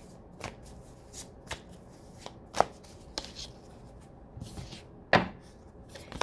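A deck of tarot cards being shuffled by hand: a run of soft, irregular clicks as the cards slide and slap together, with a couple of sharper taps, one about halfway through and one near the end.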